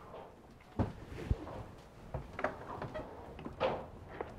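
Footsteps and a few scattered light knocks on a yacht's interior staircase over a quiet background.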